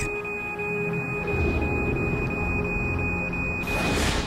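A steady, high-pitched electronic alarm tone with faint regular pulses, over a low, dark music underscore; the tone cuts off sharply near the end.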